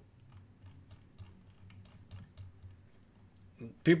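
Computer keyboard being typed on in quick, irregular, faint taps, over a low steady hum.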